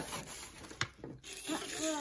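Paper gift bag and tissue paper rustling as hands open it and dig inside, with one sharp click a little under a second in.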